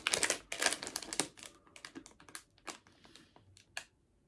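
Small hard plastic packaging being handled: a quick run of light clicks and taps at first, thinning out to a few separate clicks, the last one just before the end.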